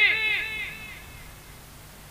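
Echo from a public-address system's delay effect: the preacher's last shouted syllable repeats several times a second, each repeat fainter, and dies away within the first second. Faint background noise from the sound system remains.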